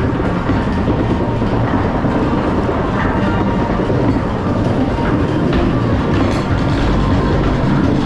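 Log flume boat riding up a chain lift hill: the lift chain and rollers clatter steadily under the log, with water running down the wet lift trough.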